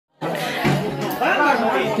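Several people talking and calling out over one another in a lively group, with music underneath.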